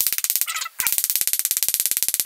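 A rapid, even train of clicks, about twenty a second, with a short break about three-quarters of a second in: the stuttering sound of a frozen, buffering video stream.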